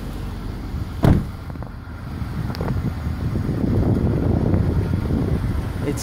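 A single thump about a second in, over steady low background rumble. The rushing noise swells for a couple of seconds in the second half.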